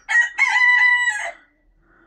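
Pekin bantam cockerel crowing once: a short, high crow lasting just over a second that drops away at the end.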